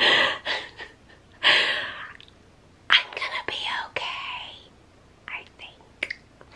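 A woman laughing breathily and whispering, in several short breathy bursts with little voice in them.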